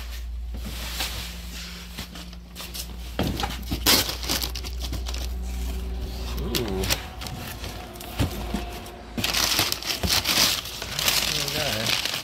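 Paper crinkling and rustling as newspaper ad-flyer wrapping is pulled off items inside a cardboard box, with the box's cardboard flaps handled; the crinkling is densest in the last few seconds, over a steady low hum.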